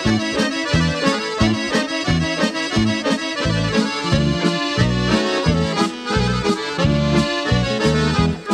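Instrumental intro of a Yugoslav folk song, an accordion leading the melody over a steady pulsing bass beat.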